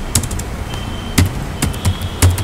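Computer keyboard keystrokes: a handful of separate key clicks, a couple near the start and three in the second half, over a steady background hiss.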